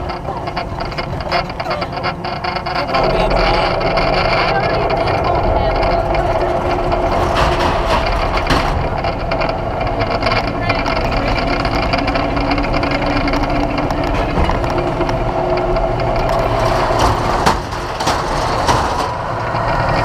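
Mechanical bull ride machine's motor running steadily, with a strong hum that steps up louder about three seconds in as the bull bucks and spins the rider. It eases off briefly near the end as the ride winds down.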